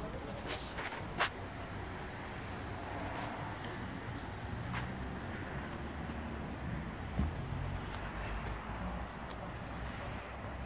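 Steady low outdoor rumble of a wet, snowy town street, with a few faint clicks and a soft knock.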